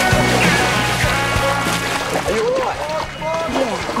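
Rock music that fades about two seconds in, giving way to several people shouting over water sloshing as a person on a rope drops into a water pit.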